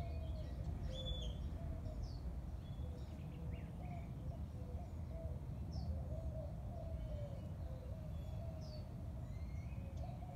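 Birds calling: short high chirps every second or two and a lower, wavering call that runs on, over a steady low rumble of outdoor background noise.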